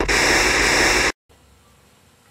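Television static hiss, steady and loud for about a second as the channel switches, then cutting off suddenly into faint room tone.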